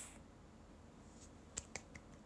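Two quick, light hand claps, about a second and a half in, against near silence.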